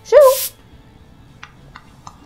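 A dog gives one short yelp, rising then falling in pitch, in the first half second.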